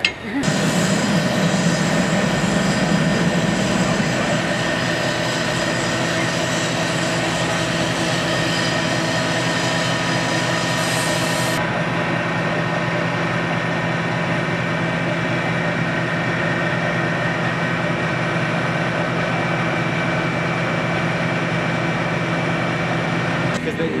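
A steady engine drone, like a vehicle idling, holding one constant pitch with a low hum under it; the high hiss drops away about halfway through.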